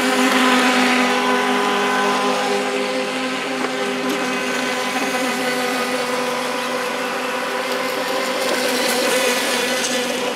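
Radio-controlled Pro Boat Shockwave 26 running flat out on the water: a steady, high electric motor whine over the hiss of the hull and spray. It is loudest about half a second in as the boat passes close, then holds fairly level, swelling again slightly near the end.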